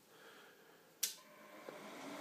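A network lab rack of switches and servers powering on: a single sharp click about a second in as the power comes on, followed by the cooling fans starting to run, their noise building steadily.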